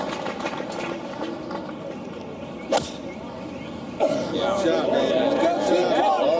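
A single sharp click of a six-iron striking a golf ball off the tee, about three seconds in. About a second later the gallery's voices rise in a busy murmur.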